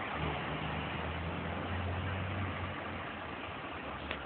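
Road traffic at close range: a car passing and a single-decker bus pulling round. Their engines make a steady low hum over road noise, which weakens a little after about two and a half seconds.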